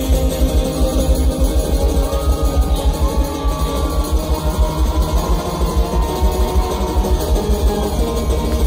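Loud live concert music: guitar over a heavy, pulsing bass beat, heard from within the crowd.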